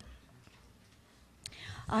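A pause in a woman's reading: quiet room tone with a faint click about one and a half seconds in, then her voice starting again at the very end.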